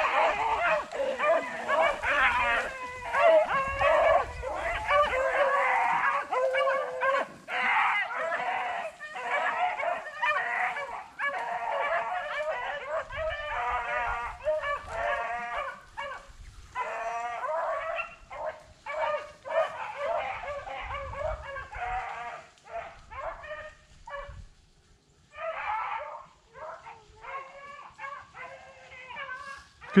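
A pack of beagles baying on a rabbit's track, several hounds giving voice at once and close by. The chorus breaks off briefly about 24 seconds in, then comes back more sparsely toward the end.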